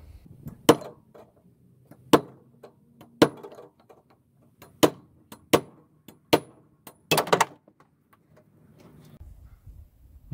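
Hammer blows driving the rusted fan motor out of an air conditioner's steel frame: sharp, irregularly spaced strikes, with a quick few together about seven seconds in.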